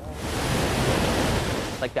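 Water pouring through a dam's concrete outlet chamber: a loud, steady rush that stops shortly before the end, when speech cuts in.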